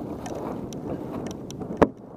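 Kayak paddling: water splashing and lapping at the hull, with wind on the microphone. One sharp knock sounds near the end.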